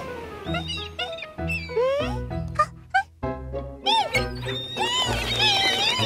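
Cartoon seagull calls: many short squawks and cries that glide up and down in pitch in quick succession, becoming longer wavering cries near the end, over background music with a low bass line.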